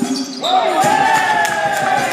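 A basketball bouncing on a hardwood gym floor. About half a second in comes a long drawn-out shout from a single voice, rising at first and then held for over a second.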